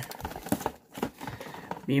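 Cardboard and plastic packaging being handled: light crinkling and scattered small clicks as the box is turned over.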